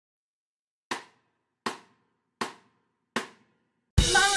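Four evenly spaced percussion hits, about three-quarters of a second apart, each short and quickly dying away: a count-in to the music that follows.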